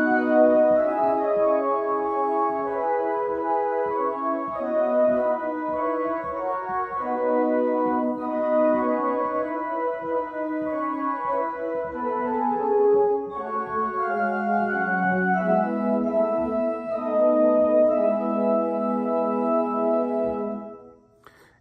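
Church organ playing a hymn descant, a high counter-melody sounded over the hymn's chords, in sustained notes that change step by step.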